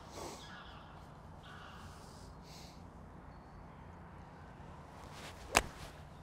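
A pitching wedge striking a golf ball on a full approach shot: one sharp, crisp click near the end. The contact is clean, an "absolute pinch".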